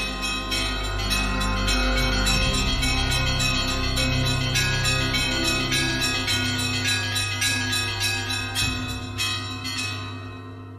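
Theme music built on church-bell ringing: quick strokes of several bells, a few a second, over a steady low tone, beginning to fade near the end.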